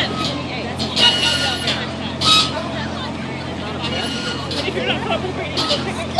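Road traffic from cars passing on a busy street, over a steady low hum, with indistinct voices of people close by and a few short knocks.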